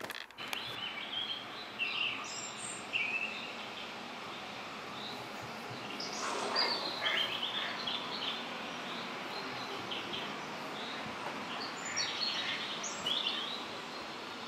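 Small birds chirping and singing in short bursts now and then, over a steady background hiss.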